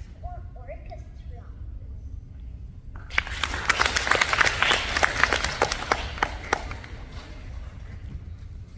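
Audience applauding: a dense patter of hand claps that starts about three seconds in, lasts about four seconds and dies away before the end.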